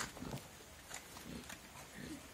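Faint animal calls, low and soft, heard twice, with a light knock right at the start.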